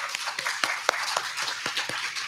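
A congregation clapping, with individual hand claps standing out in quick, irregular succession.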